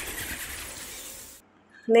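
Fading tail of a logo-intro sound effect: a high, glassy shimmering noise dying away, cut off suddenly about one and a half seconds in. A woman starts speaking just before the end.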